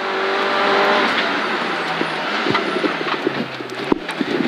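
Mini Cooper rally car's engine running hard, heard from inside the cabin. It is loudest about a second in and eases slightly after, with a sharp click near the end.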